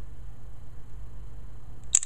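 LG GD510 Pop mobile phone's camera shutter sound as a photo is taken: a short, sharp double click near the end, over a low steady hum.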